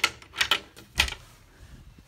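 A storage door being opened: a few sharp knocks and clicks, close together in the first second, then quieter handling sounds.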